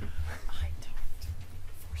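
Quiet, half-whispered talk between people close to a microphone, with a low rumble underneath.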